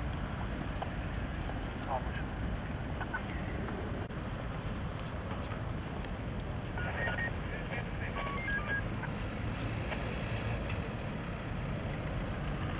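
Roadside street ambience: a steady rumble of traffic with voices of people walking past. A few short high-pitched tones sound about seven to nine seconds in.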